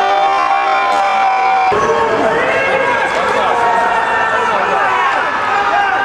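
Many voices shouting and calling out over one another in an indoor ice rink, as from spectators or players during a youth hockey game.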